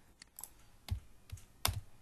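A handful of separate clicks from a computer keyboard and mouse, the loudest about three-quarters of the way through.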